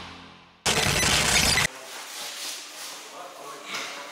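Background music fading out, then a sudden burst of noise about a second long that cuts off abruptly, followed by faint voices in a room.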